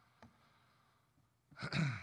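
Quiet room tone with a faint click about a quarter second in, then a man's voice into the microphone near the end, like a sigh.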